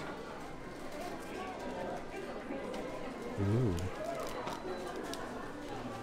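Shop room tone with a steady low hubbub. About halfway through, a man gives a short, low, wordless hum that rises and falls.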